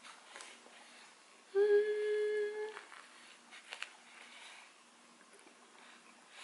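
A woman hums one steady, level-pitched "mmm" through a mouthful of burger, about a second and a half in, lasting just over a second. Faint clicks of chewing come around it.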